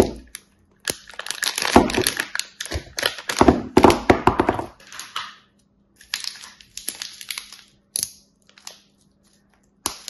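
Thin clear plastic soap wrapper crinkling and crackling as it is handled and peeled off bars of soap, dense for the first half, then a few sparser crackles and a lull near the end.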